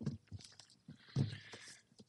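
Scattered soft knocks and rustles of someone handling things at a speaker's podium, with a louder bump a little after a second in.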